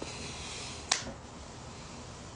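A single sharp click about a second in, over a steady hiss.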